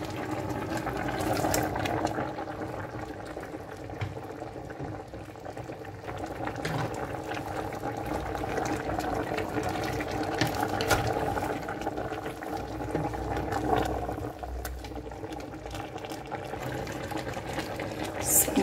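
A pot of meat stock bubbling on the boil, a steady noise with a few faint clicks.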